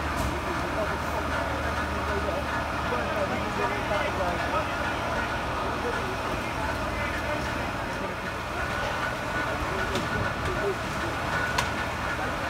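Fire engines standing with their diesel engines running, a steady low hum, under indistinct voices of people in the street. The hum is strongest in the first half and weaker after about six seconds.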